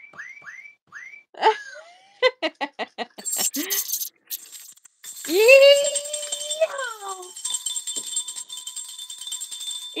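Playful whoops and yells in the spirit of a "yeehaw," with a long held yell about five seconds in. A rattle is shaken in between, as a quick run of clicks and then a noisy burst about two to four seconds in. A steady high tone sounds behind from about four seconds on.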